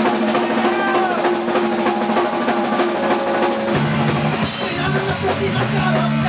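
Hardcore punk band playing the instrumental opening of a song live: steady drum-kit hits under held electric guitar and bass chords, with the low notes changing a little over halfway through.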